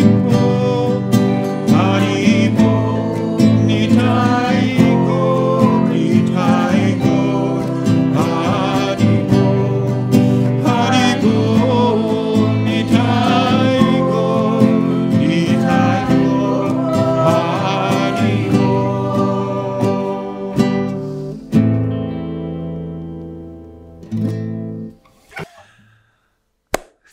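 A man singing with a strummed acoustic guitar. The song ends about 21 seconds in, and the last chord rings out and fades.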